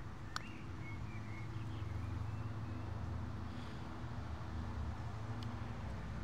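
A putter striking a golf ball once: a single sharp click about half a second in. A steady low drone runs underneath.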